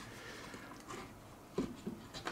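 Faint handling noise of fingers prying at a stuck bass driver's frame and surround in a speaker cabinet, with a few small ticks and a short knock about one and a half seconds in.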